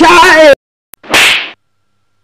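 Edited comedy sound effects: a wavering pitched tone for about half a second, then a click and a short, sharp whip-like swish about a second in.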